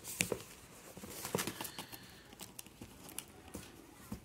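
Fingernails scratching and picking at the seal of a small cardboard box as it is handled, with a dozen or so light, irregular taps and clicks.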